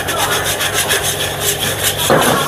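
Wire whisk scraping quickly and rhythmically against a steel wok as flour is whisked into melted butter to make a roux.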